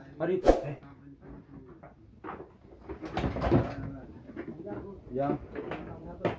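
Indistinct voices talking quietly in short snatches, with a single sharp knock about half a second in.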